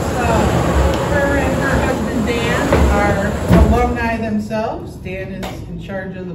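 Plastic drawing balls rolling and rattling in a wooden sweepstakes drum as it is turned, a low rumbling clatter that dies down after about three and a half seconds with a knock, under low voices.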